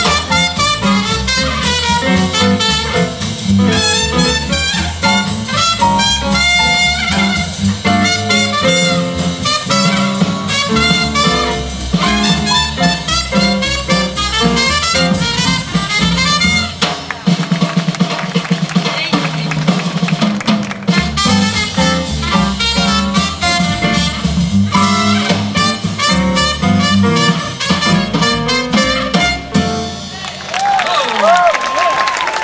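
Live small-band jazz: trumpet lead over keyboard, drum kit and upright double bass. About 17 s in the bass and drums drop out for a few seconds, then the full band comes back in and plays the tune to its finish at the very end.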